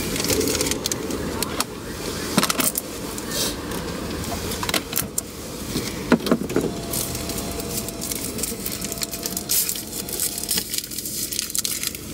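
Paper straw wrapper and a plastic drink cup being handled and unwrapped inside a car, a run of crinkles and small clicks over a steady low rumble from the car.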